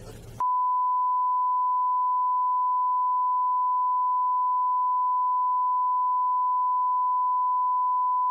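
A steady, single-pitched censor bleep tone that starts abruptly about half a second in and blanks out all other sound: the audio track has been redacted.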